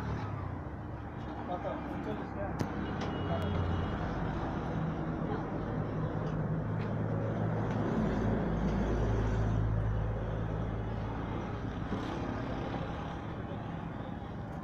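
Steady low engine rumble like a running motor vehicle, swelling for a couple of seconds around the middle, with indistinct voices in the background.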